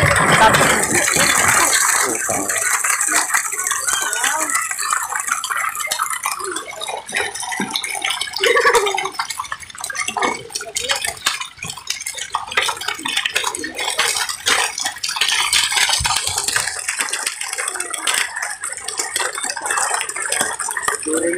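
A net packed with live milkfish thrashing and splashing at the water's surface, a dense continuous crackle of small splashes and slaps, with people's voices in among it.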